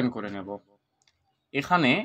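A man speaking, a pause of about a second, then speaking again. A faint computer mouse click falls in the pause.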